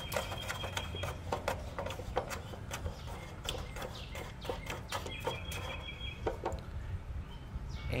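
A run of light clicks and scrapes as the small retaining nut of a gas grill's push-button igniter is unscrewed by hand from the steel control panel. A bird calls faintly twice in the background, near the start and again about five seconds in.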